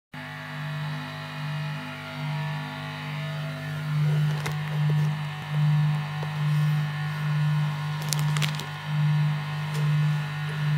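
Electric guitar rig humming: a steady low mains-type buzz with many overtones that swells and fades about once a second. Sharp clicks cut in about four and a half seconds in and again in a cluster around eight seconds, as the guitar and its cable are handled.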